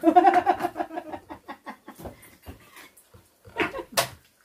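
A person laughing: a quick run of pulsed "ha" sounds that fades out over about two seconds, then a short, louder burst near the end.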